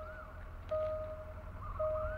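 Railway level-crossing warning signal sounding: a steady electronic tone about half a second long, repeating roughly once a second, over a low steady rumble.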